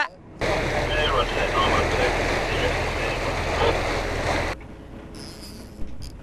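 Boat engine running under wind and sea noise, cutting off sharply about four and a half seconds in, leaving a quieter hiss.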